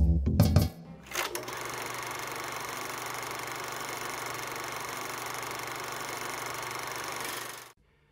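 Music with a beat breaks off within the first second. A film projector then runs with a steady mechanical whir, cutting off shortly before the end.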